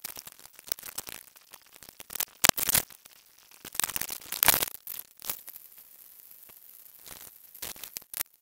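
Sped-up, fast-forwarded recording audio: dense irregular crackling and clicking, loudest about a third of the way in and again near the middle, with a steady high hiss in the second half.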